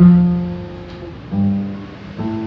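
Acoustic guitar plucked twice, about a second and a half apart, on an F chord: a low note rings out and fades each time.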